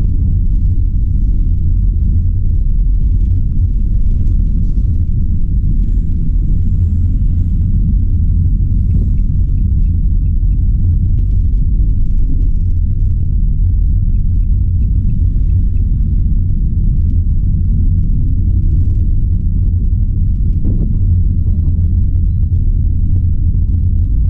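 Steady low rumble inside the cab of a moving van: engine and road noise heard while driving.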